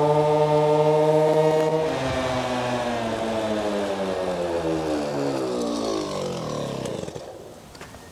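Small two-stroke engine of a stock Go-Ped petrol scooter running at a steady high pitch for about two seconds. Its revs then fall gradually and the sound fades as the rider backs off and slows. The buzzing note sounds like a leaf blower.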